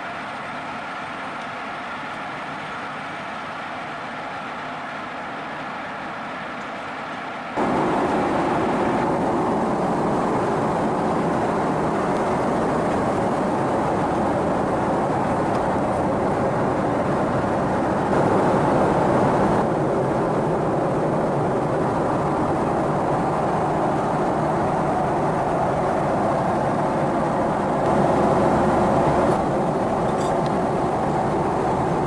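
Steady cabin noise of a Boeing 777-300ER in flight: an even rushing hum with no distinct events. It is quieter at first, jumps up abruptly about seven seconds in, and then stays level with small steps up and down.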